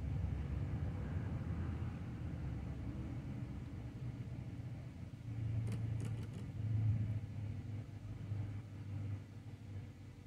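A low, uneven mechanical rumble, swelling a little in the middle, with a few faint clicks about six seconds in.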